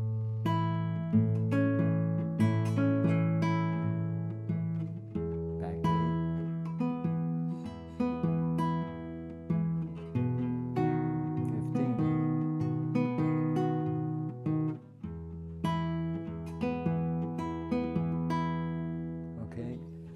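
Classical (nylon-string) guitar fingerpicked: a steady pattern of plucked notes over a low bass note, with the bass and chord shifting about five seconds in and again near fifteen seconds, as the hand moves through a blues chord progression.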